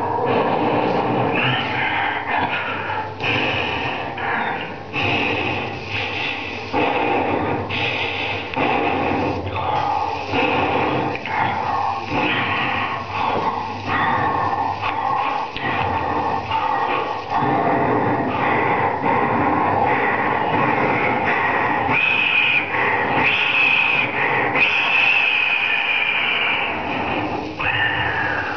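A sound poet's amplified live vocal performance: mouth, breath and throat noises made right at a microphone, dense and continuous, with a high held tone near the end.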